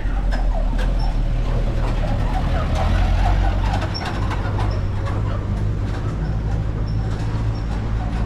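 City street traffic: a motor vehicle's engine rumbling low and steadily close by, with people talking in the background during the first half.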